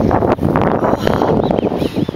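Wind buffeting the microphone: a loud, rough rumble.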